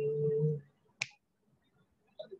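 A single finger snap about a second in, marking a half-note beat about two seconds after the previous snap. Before it, a held pitched note fades out about half a second in.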